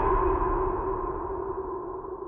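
Horror-intro sound effect: a steady held tone at two pitches over a low rumble, slowly fading.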